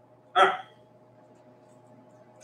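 A man's voice: one short, loud spoken word ("all right"), then a low steady room hum.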